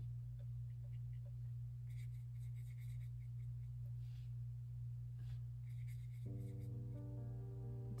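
Faint dabs and swishes of a watercolor brush mixing paint in the wells of a plastic palette, over a steady low hum. Soft background music comes in about six seconds in.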